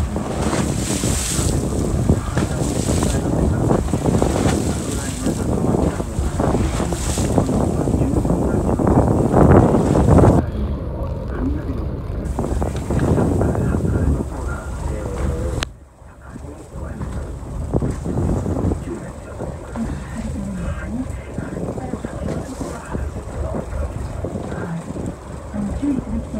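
Wind buffeting the microphone on a boat at sea, over the wash of waves against the hull; the rumble drops away sharply for a moment about two-thirds through.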